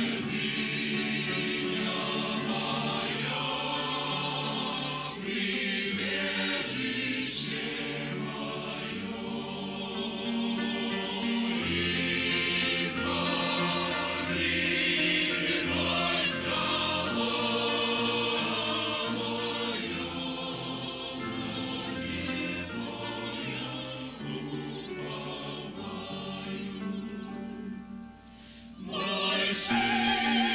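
Mixed church choir of men and women singing a hymn to grand piano accompaniment. Near the end the singing breaks off briefly between phrases, then resumes.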